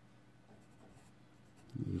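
Ballpoint pen writing on a sheet of paper: faint, short scratching strokes.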